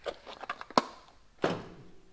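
Light taps and clicks of a small cardboard box and its styrofoam insert being handled and set down on a workbench, with one sharp click about three quarters of a second in and a short rustle about a second and a half in.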